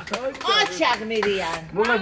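Laughing and excited voices, with a few scattered hand claps.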